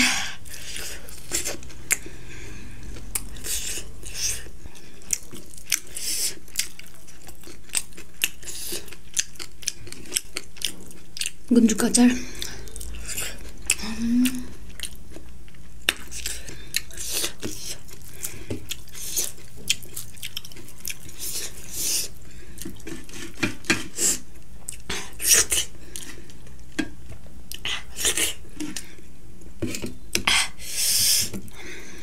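Close-miked chewing and wet mouth sounds of someone eating by hand, with many small clicks and clinks of fingers and food against a metal plate and a glass bowl. A couple of brief vocal sounds come about twelve and fourteen seconds in.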